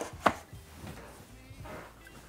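Black plastic seed-starting tray of wet peat pellets set down on a stone countertop: a sharp plastic clack about a quarter second in, then a few softer knocks as it is shifted into place.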